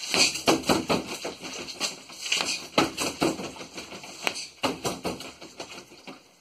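An irregular run of knocks, taps and scuffs as a person throws side kicks and shifts and plants their feet on the floor.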